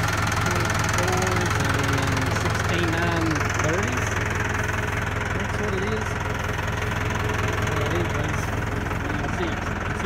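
Massey Ferguson 573 tractor's diesel engine idling steadily with a low, even hum.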